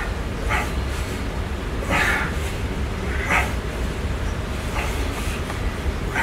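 A man breathing out hard in short bursts, about one every second and a half, in time with barbell bench press reps, over a steady low hum.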